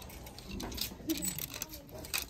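Black plastic clothes hangers clicking and scraping along a metal clothing rail as they are pushed aside one by one, with several sharp clicks. Faint voices murmur underneath.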